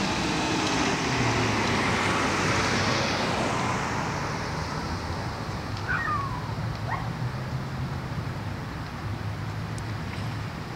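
A car passing in a parking lot: its tyre and engine noise swells and then fades over the first few seconds, over a steady low hum. Two short chirps come about six and seven seconds in.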